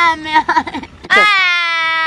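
A young woman wailing in pain: a wavering cry breaks into a few short sobbing catches, then just past the middle she lets out one long, held wail.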